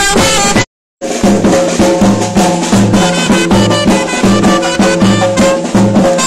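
Egyptian baladi street band: a large double-headed tabl drum beaten with a stick in a steady rhythm under a loud reed wind instrument playing a repeating melody. The sound cuts out completely for about a third of a second just under a second in, then resumes.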